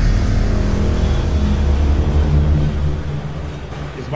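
Deep, steady cinematic rumble from a logo intro sting, a bass drone that fades near the end.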